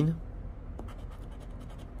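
A scratcher coin scraping the coating off a scratch-off lottery ticket: faint, intermittent scratching.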